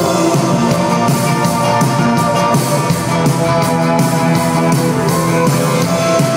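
Live indie rock band playing an instrumental passage, with electric guitars, keyboard and drum kit, loud and steady with no vocals.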